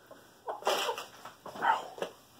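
Rooster giving two short calls, the louder about half a second in and a shorter one near the end.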